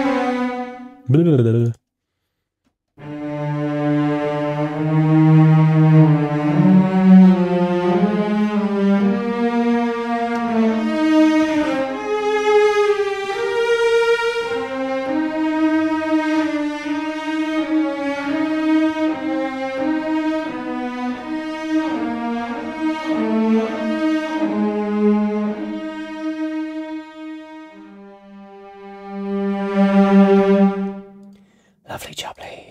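Cinematic Studio Strings' sampled cello section, played from a keyboard in the Sustain articulation. After one short note and a brief silence, it plays a slow line of held notes, each flowing into the next, that fades near the end before a final low note.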